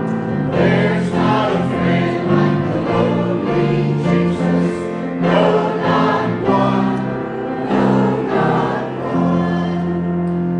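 Mixed church choir of men and women singing a hymn, holding long sustained notes.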